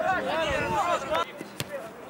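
Raised voices shouting for about the first second, then a single sharp kick of a football about one and a half seconds in.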